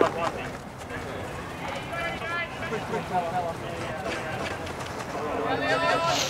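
Distant voices of hockey players calling across the pitch, with no words clear, over steady outdoor background noise.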